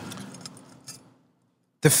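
Faint room noise fading away after a man's voice, with one small click, then about half a second of dead silence where the audio is cut. A man's voice starts abruptly near the end.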